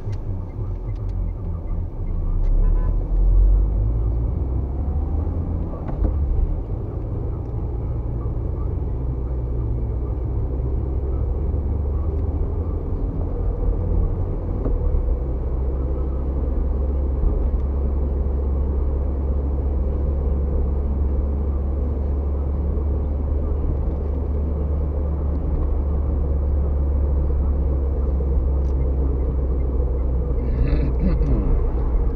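Car engine and road noise heard from inside the cabin while driving: a steady low rumble that swells briefly about three seconds in.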